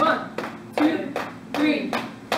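Hands slapping against the thighs in a steady rhythm, about two or three slaps a second, with a voice sounding between the slaps.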